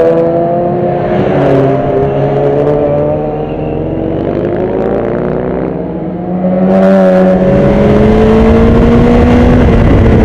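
Several sport motorcycle engines revving through a corner, their overlapping pitches rising and falling as the bikes pass. From about seven seconds in a louder engine runs on steadily, its pitch climbing slowly as it accelerates.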